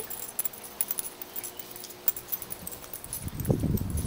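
Handling noise from a handheld camera carried across a lawn: scattered light clicks and jingles, then low rumbling thumps in about the last second.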